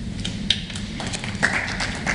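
A few scattered light taps and clicks over a steady low hum.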